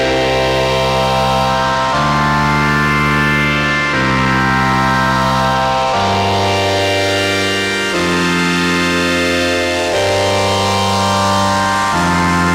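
Behringer Solina String Ensemble string-machine chords, run through an OTO Machines BOUM. Sustained chords change about every two seconds, with a slow sweeping shimmer in the upper tones.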